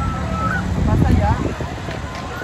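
Riders on the spinning Parkour fairground thrill ride screaming: one long held scream that rises at its end, then a few short shrieks about a second in, over a low rumble and crowd chatter.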